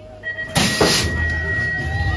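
BMX start gate: a long steady electronic start tone, with the metal gate slamming down loudly about half a second in. Then a low rumble of the riders' bikes leaving the ramp, with shouts from the crowd near the end.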